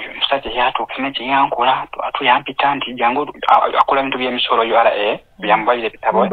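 A person talking almost without pause, with the thin, narrow sound of a telephone line.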